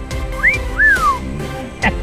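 A person's two-part whistle of admiration, a wolf whistle that glides up, breaks briefly and then slides down, about half a second in, over background music.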